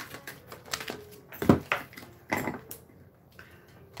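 Tarot cards being shuffled by hand: a quick run of flicks and slaps, with louder slaps about one and a half seconds in and again near the middle, then quieter near the end.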